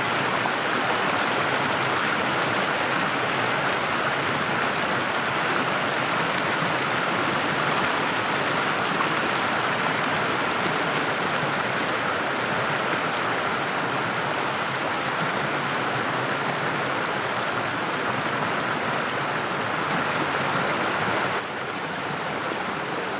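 Stream water rushing and splashing over rock slabs close to the microphone, a steady even rush of white water. It drops a little in level near the end.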